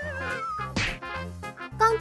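Cartoon 'dazed' sound effect: a wavering whistle sliding down in pitch, the comic signal that a character has been knocked senseless. It plays over background music with a steady bass beat, with a short swish partway through.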